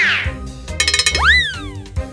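Children's cartoon background music with comic sound effects: a sweeping whoosh that falls away at the start, a short sparkling chime about a second in, then a pitched tone that swoops up quickly and slides back down.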